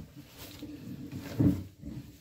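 Rustling and bumping of a fabric blazer as it is pulled on over the shoulders and arms, with a louder low bump about one and a half seconds in.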